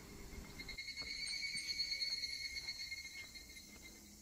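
Faint steady buzz of a cicada, coming in about half a second in and holding one high pitch, with a few soft footsteps on the forest floor.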